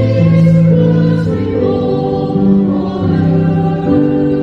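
Church congregation and choir singing a hymn with held chords that change every second or so.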